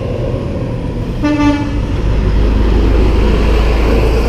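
A vehicle horn gives one short toot about a second in, over the rumble of a nearby motor vehicle that grows louder.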